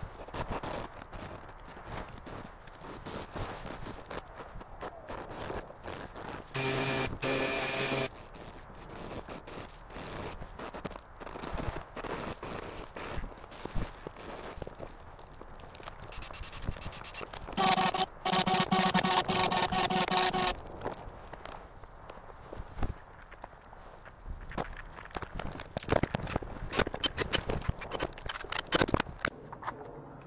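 Scattered knocks, clicks and scrapes of hand work on wooden parts at a workbench. Twice a steady pitched hum cuts in: once for about a second and a half a quarter of the way in, and again, louder, for about three seconds just past the middle.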